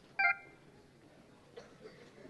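A short beep of two pitches sounding together, about a quarter second in, cutting off almost at once; then a few faint shuffling clicks.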